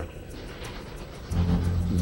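Steam train running, a low noisy rumble under soft background music; about a second and a half in, a low steady tone comes in.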